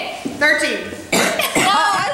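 A woman laughing, with other voices: two short bursts of high laughter around the table.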